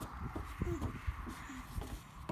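A toddler climbing onto a plastic play slide: light bumps and knocks of hands and knees on the hollow plastic platform, over a low uneven rumble.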